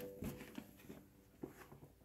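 Near silence: quiet room tone with two faint short clicks, one just after the start and one about one and a half seconds in.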